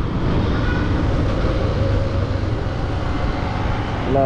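Motorcycle engine running steadily at low riding speed, with a continuous low rumble of wind and road noise on a helmet-mounted action camera's microphone.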